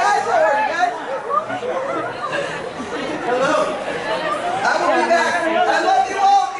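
Crowd chatter: many voices talking over one another at once in a large hall.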